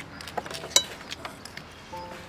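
Metal spoons clinking against ceramic plates and bowls while eating: several light clicks, with one sharper, briefly ringing clink about three quarters of a second in.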